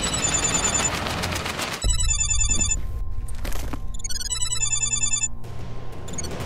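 Background music for about the first two seconds, then a mobile phone ringtone: an electronic ringing pattern that sounds twice, each time for about a second, with a short pause between.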